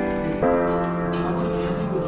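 Piano music: a chord struck about half a second in and left ringing over the notes before it.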